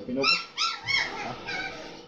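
Dog whining: three short, high-pitched whines in quick succession in the first second, with fainter ones after.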